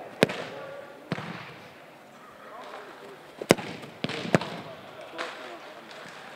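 Sharp thuds of footballs being kicked and landing on turf, about six at irregular intervals, the loudest a few seconds in, echoing in a large indoor practice facility.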